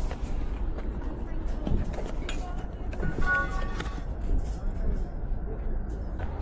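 Outdoor market crowd ambience: a steady low rumble with faint distant voices of people chatting, and a few light clicks and rustles.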